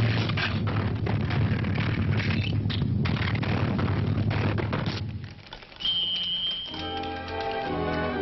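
Cartoon soundtrack: a dense rumbling crash mixed with orchestral music for about five seconds, dying away, then a short high steady tone, and light orchestral music starting up again near the end.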